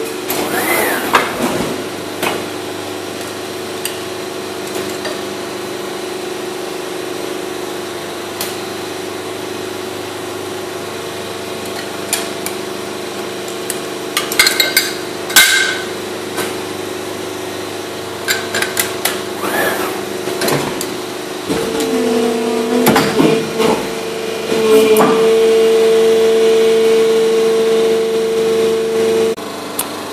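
Injection moulding machine cycling a mould: a steady mechanical hum, with clicks and knocks as the mould opens and closes and parts come out. For about eight seconds near the end the hum is louder and steadier, the machine under load during injection and hold, then it drops back.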